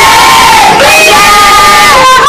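A group of young performers' voices singing and calling out loud held notes together, the pitch stepping up about a second in.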